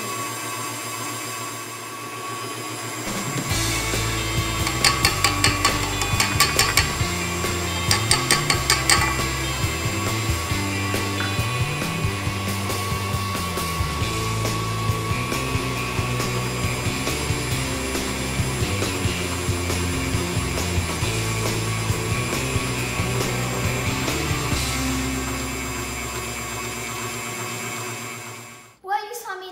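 KitchenAid Artisan stand mixer running steadily, its wire whisk beating frosting in a steel bowl. Background music with a bass line comes in about three seconds in and plays over it.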